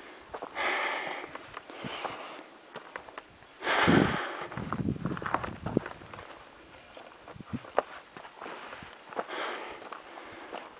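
A hiker breathing hard from a strenuous high-altitude climb, with a few loud breaths, the strongest about four seconds in, and footsteps on a rocky, gravelly trail.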